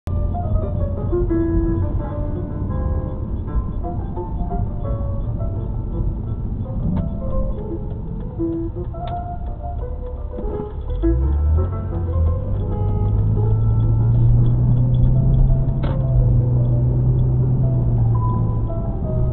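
Music from a car radio playing inside the car cabin, a run of short separate notes, over the low hum of the car's engine and road noise. About eleven seconds in the low hum rises and holds louder as the car pulls away.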